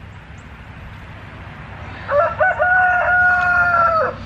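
A rooster crowing once: about two seconds in it starts with a few short broken notes, then holds one long, steady note that ends right at the end.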